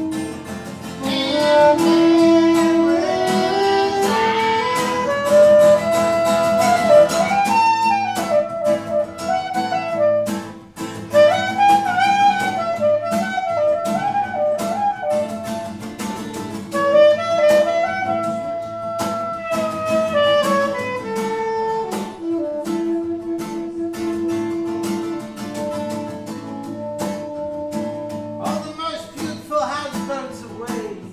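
A saxophone plays a flowing instrumental melody with long held notes over a plucked acoustic guitar accompaniment, in a relaxed jazz style.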